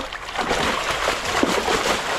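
A large fish thrashing in the water as it is released from a fabric sling, a rapid, irregular run of splashes that starts just after the beginning and keeps going.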